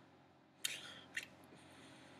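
Faint room tone broken by two brief clicks, a sharp one a little over half a second in and a smaller one about a second later.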